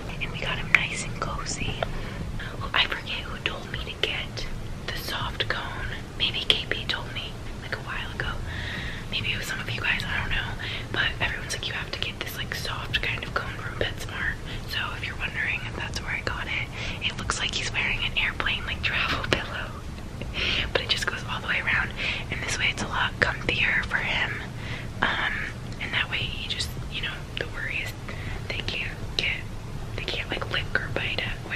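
A woman whispering steadily, over a low steady hum.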